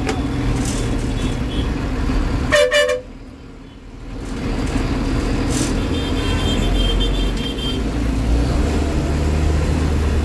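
State-run (APSRTC) bus running, heard from the driver's cab, with a short loud horn blast about two and a half seconds in. The sound drops away for about a second right after, then the running noise returns, with faint repeated high beeps in the middle and the engine growing stronger near the end.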